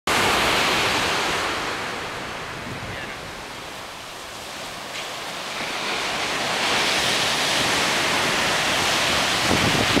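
Ocean surf breaking and washing up a sandy beach, a continuous rush that eases around four seconds in and swells again from about six seconds, with some wind on the microphone.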